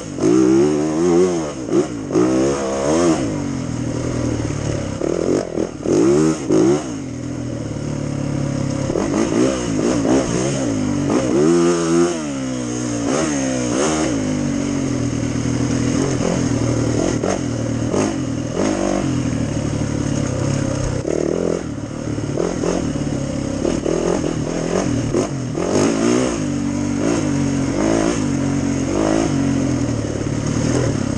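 Dirt bike engine being ridden, its pitch rising and falling over and over as the throttle is opened and closed for roughly the first half, then running steadier.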